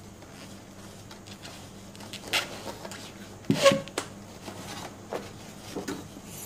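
Books and a cardboard box being handled: rustling and a few short knocks as books slide against each other and the box, loudest about three and a half seconds in.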